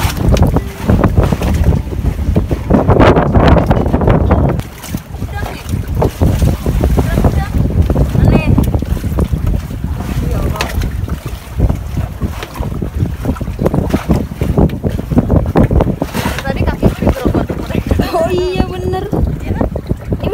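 Strong wind buffeting the microphone throughout, a loud, uneven low rumble that swells and drops in gusts. A short burst of voices comes near the end.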